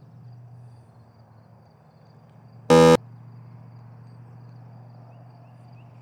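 A single short, loud electronic beep, lasting about a third of a second, comes near the middle. Under it runs a steady low hum with faint, high insect-like chirping.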